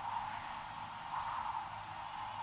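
Faint, steady hiss-like background ambience with no distinct events.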